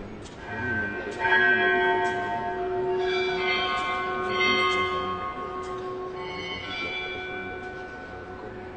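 Bells rung at the elevation of the consecrated host during Mass. Several strikes leave long, overlapping ringing tones that fade toward the end.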